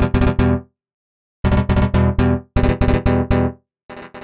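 Ableton Live's Tension physically modelled string synth being auditioned: short phrases of quickly repeated pitched notes, each phrase about a second long and cutting off sharply, with brief gaps between them.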